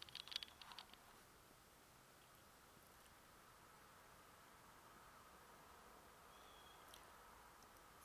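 Near silence: a faint steady hiss, with a few soft clicks and rustles in the first second as the thermometer probe is handled.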